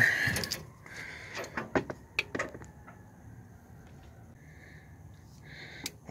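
A rustle, then a few short clicks and knocks of a socket and breaker bar being handled in a pickup's engine bay, mostly in the first half.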